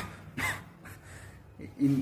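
A man's single short cough into his fist, about half a second in.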